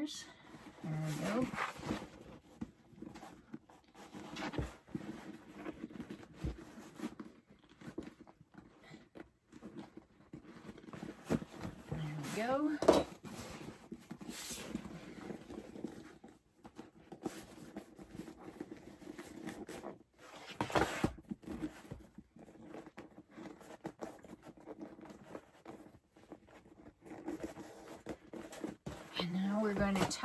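Hands working a turned-out faux leather and waterproof canvas handbag, pushing out corners and smoothing the panels: irregular rustles of the stiff material with short clicks and scrapes.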